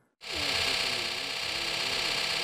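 A subsurface radar's paper chart recorder running as it prints a scan: a steady mechanical whir with a high hiss. It starts just after a brief silence at the cut.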